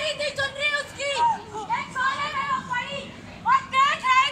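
High-pitched raised voice of a street-play performer crying out in long, wavering calls, without clear words.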